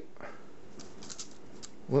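Tracing paper and tape rustling and crinkling under the hand as the paper is pulled tight and taped down, with a few soft scratchy crackles around the middle.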